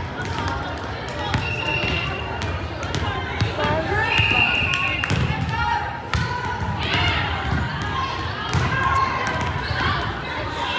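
Volleyballs bouncing and being struck in a gymnasium, scattered sharp knocks over constant echoing crowd chatter.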